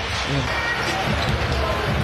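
Basketball being dribbled on a hardwood court, with arena crowd noise behind it.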